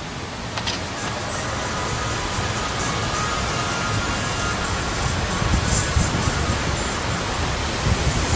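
Steady rushing of wind through the surrounding leaves, with a low rumble of wind on the phone's microphone.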